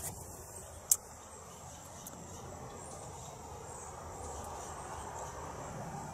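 Crickets chirring steadily in the background, with leaves and grass rustling as the plants are handled and brushed past. A single sharp click comes about a second in.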